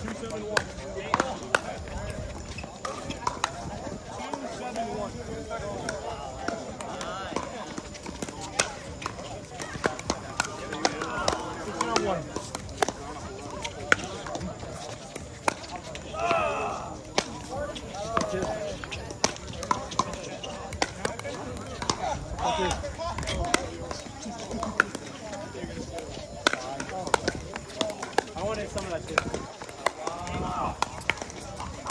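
Pickleball rally: sharp pops of paddles striking a hard plastic pickleball at irregular intervals, over a steady background of people's voices.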